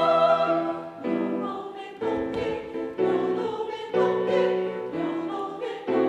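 A mixed choir singing on stage. A held chord breaks off within the first second, then short phrases come in about once a second.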